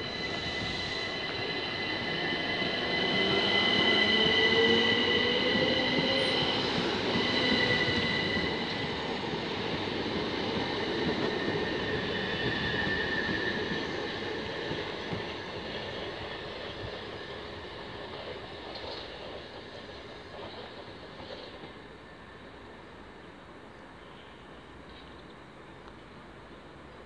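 Class 375 Electrostar electric multiple unit pulling away and accelerating past, with a rising whine from its traction equipment and steady high-pitched tones over the running noise of the wheels. It is loudest a few seconds in, then fades steadily as the train draws away.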